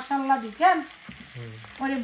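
A voice singing a slow melody in long, wavering held notes. It breaks off about halfway, a short lower note follows, and the singing resumes near the end.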